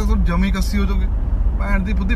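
Steady low rumble of a car's cabin, road and engine noise from a car on the move, under a man talking in Punjabi.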